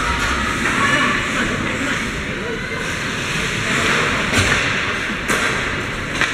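Ice hockey being played in a rink: a steady wash of skates on the ice and voices calling out, with two sharp clacks about a second apart near the end.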